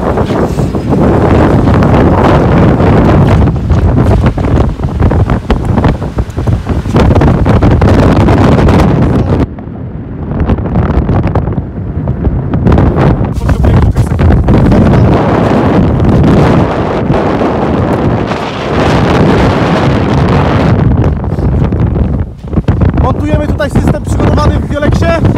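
Strong wind blowing hard across the microphone, loud and gusting, easing briefly about ten seconds in.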